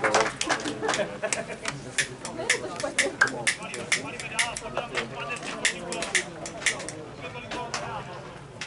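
Scattered, uneven hand claps from a few spectators, several a second, over faint voices of people talking.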